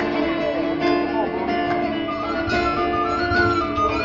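Live band music led by plucked strings, with a sustained higher melody line coming in about two seconds in.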